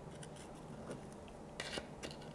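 Knife blade scraping along the inside wall of a terracotta pot through potting soil to work a root ball free: faint scrapes and ticks, with a louder scrape near the end.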